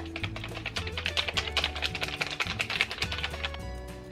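Rapid run of soft clicks and flutter from a small plastic object waved quickly in front of the face to fan setting spray dry, over background music with a steady beat.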